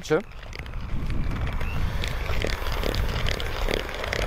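Electric hand mixer running steadily, its beaters whisking muffin batter in a bowl, with a few faint clicks.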